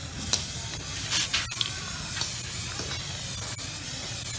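Aerosol spray paint can hissing as paint is sprayed at close range, with a few short louder spurts in the first half.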